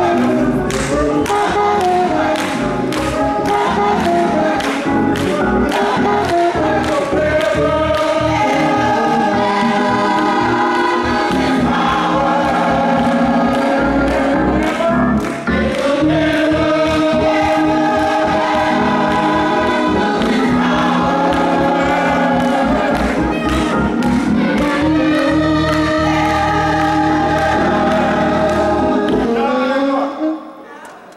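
Gospel choir singing in harmony during rehearsal, holding long chords that change every few seconds, then cutting off together at the end.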